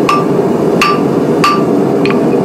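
Hand hammer striking a hot 3/8-inch steel bar on an anvil: three blows about two-thirds of a second apart, each with a short metallic ring. The gas forge's burner runs steadily underneath.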